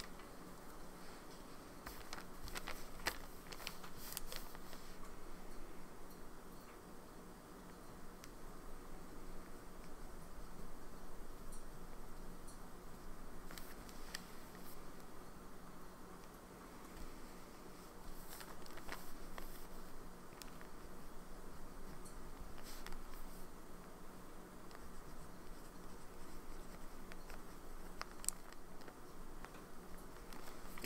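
Quiet desk handling noises: crinkly Tomoe River paper pages rustling, with a few light clicks and taps as a notebook and fountain pen are handled, over a faint steady hum.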